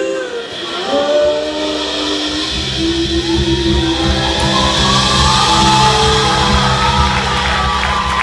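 Live folk-rock band of acoustic and electric guitars and bass coming in after an a cappella line and holding a long closing chord. Audience cheering and shouting builds over it.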